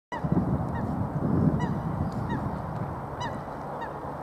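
Waterbirds honking: about six short, pitched calls, each bending slightly down in pitch, repeated at irregular intervals over a low, uneven rumble.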